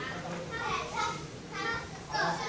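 Children's voices chattering and calling out in the background.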